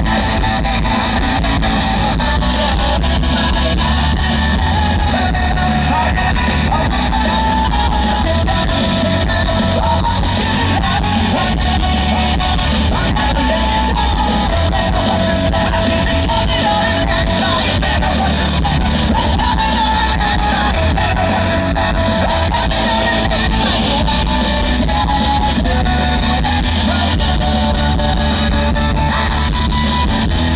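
Rock band playing live, loud electric guitars over bass and drums, recorded from within the audience at a concert. The music runs at a steady high level with no break.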